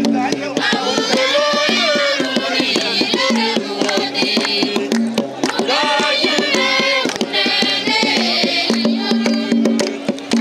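A group of voices singing together to a beaten hand drum and hand claps: Dinka wrestling-ground singing.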